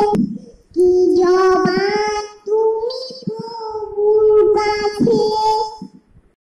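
A young girl singing an Islamic devotional song (naat) in long held notes, in three phrases with short breaks between them, stopping near the end.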